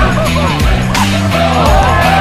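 Background music with a steady beat and heavy bass, with many short high notes gliding up and down over it.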